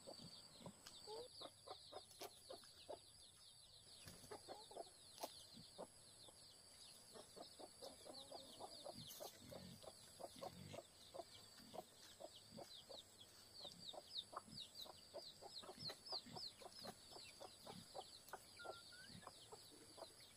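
Domestic chickens clucking quietly in short, irregular notes, with a steady high insect buzz behind them.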